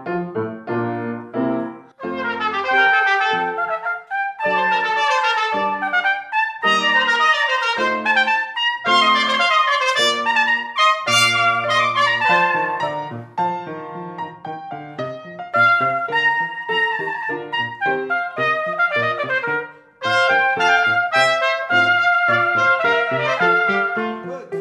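Trumpet playing a running classical melody with piano accompaniment. The piano sounds a short introduction, and the trumpet enters about two seconds in. There is a brief break near the end.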